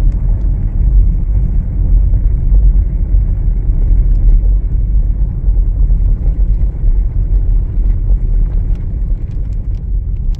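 Car driving on a rough dirt road, heard from inside the cabin: a steady, loud low rumble of tyres and engine.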